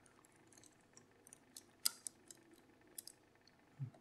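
Faint, scattered light clicks and ticks of a steel pick working the spring-loaded wafers of a Miwa DS wafer lock, with a sharper click near the middle and another about three seconds in.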